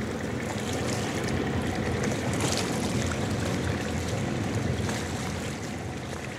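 Steady rush of water and engine noise from a motor launch under way on open water.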